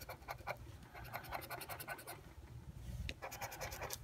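A scratch-off lottery ticket being scratched with a small flat tool, in quick short strokes across the coating. The scratching pauses briefly about halfway through.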